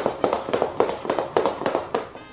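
Baby Alive Go Bye Bye crawling doll moving under its own power across a laminate floor: its hands and knees tap against the hard floor in a quick, uneven run of about four taps a second.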